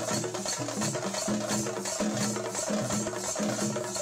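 Chenda drums beaten with sticks in a fast, dense rhythm, with a pitched melody line that moves in steps beneath the drumming.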